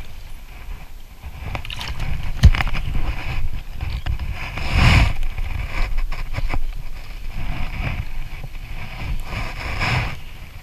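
Water splashing and sloshing as a hooked freshwater drum is grabbed by hand at the water's edge, with a loud surge about five seconds in. A single sharp knock sounds about two and a half seconds in.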